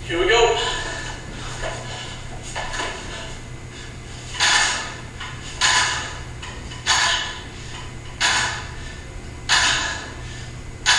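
A woman breathing out hard, one sharp breath with each lift of a pair of dumbbells in a bent-over exercise. The breaths come about every second and a quarter from about four seconds in. A short vocal sound comes right at the start.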